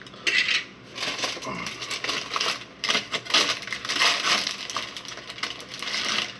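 Takeout food wrapper crinkling and rustling as it is unwrapped by hand, in irregular bursts starting about a quarter second in.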